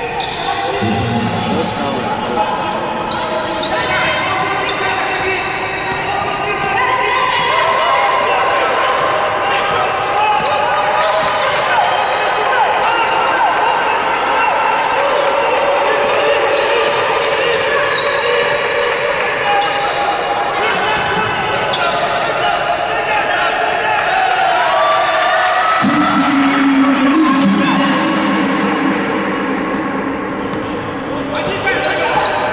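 Live basketball game sound in a large hall: the ball bouncing on the hardwood court under a steady layer of voices from players and benches calling out, louder near the end.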